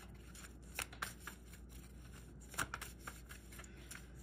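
Tarot cards being shuffled by hand, faint, with a few soft card snaps about a second in and again at about two and a half seconds in.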